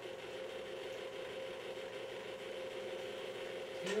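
Electric stand mixer running steadily at a low speed, beating butter, sugar and eggs in its steel bowl; a steady motor hum.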